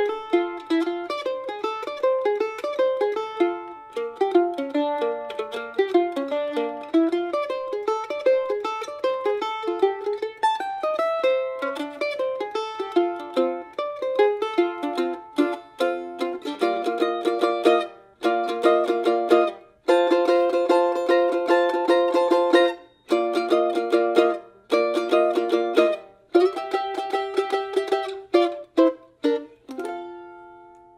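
Solo F-style mandolin playing a swung bluegrass tune with a flatpick. The first half is a quick run of single picked notes. About halfway through it moves to sustained chords broken by short stops, and it ends on a final chord left ringing.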